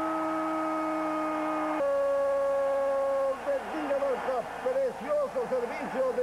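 A Spanish-language football commentator's long held goal cry, "¡Gol!", sung out on one steady note, stepping down to a lower held note about two seconds in and breaking off a little past three seconds. Fast excited commentary follows.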